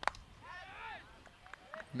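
The crack of a cricket bat striking the ball, followed by faint, distant voices calling out on the field.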